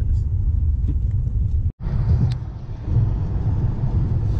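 Steady low road rumble inside a moving car's cabin. It drops out for an instant a little before halfway through, then carries on.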